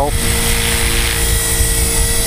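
Chaos 450PRO radio-controlled helicopter in flight, its motor and rotor giving a steady whine at a constant pitch over a low rush from the blades.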